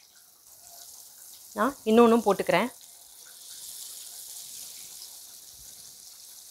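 Masala-coated yam slices shallow-frying in hot coconut oil in a pan: a steady sizzle of bubbling oil.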